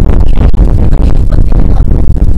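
A woman's voice, muddied and overloaded by loud, dense low rumble, so that the words are unclear.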